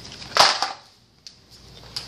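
A short, sharp rustle-and-thud about half a second in, then near quiet with one faint tap: a packaged Halloween mask being thrown and landing on a tiled floor.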